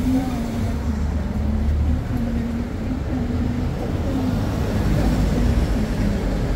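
Low, steady rumble of city street traffic, with an indistinct voice talking in the background.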